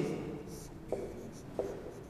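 Marker pen writing on a whiteboard in a few short strokes.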